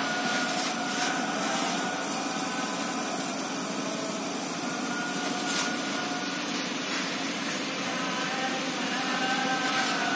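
A large fire burning through a building's roof: a steady rushing noise with a few faint cracks.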